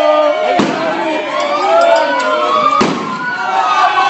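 Two sharp bangs about two seconds apart, over a crowd shouting in the street.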